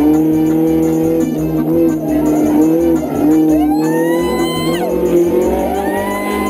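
A race-prepared rally car's engine running hard at speed, with tyres squealing through a corner from about halfway in. Background music with a steady beat plays over it.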